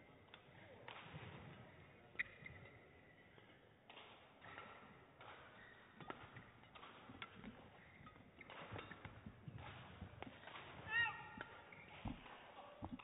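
Badminton rally: sharp racket strikes on the shuttlecock and footwork on the court, the loudest strike about two seconds in. A brief high squeak comes about eleven seconds in.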